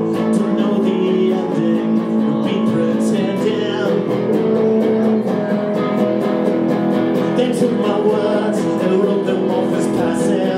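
Live guitar playing in a rock song, strummed steadily with sustained chords.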